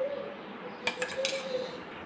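Metal spoon clinking lightly twice against a small stainless steel cup, about a second in, as a thick paste is scooped out of it.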